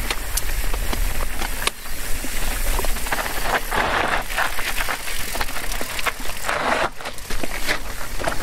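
Scott Spark RC 900 WC cross-country mountain bike coasting down rough, rocky singletrack: tyres crunching over loose gravel and rock, with many sharp knocks and rattles from the bike over the bumps, and a low rumble of wind on the microphone.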